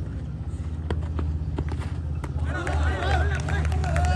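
Outdoor cricket-ground sound during a delivery: a steady low hum with a few sharp knocks. Excited voices rise from about two and a half seconds in.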